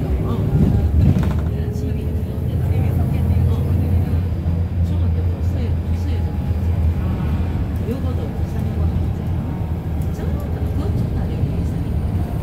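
Steady low drone of a city bus's engine and running gear heard from inside the passenger cabin while the bus is under way.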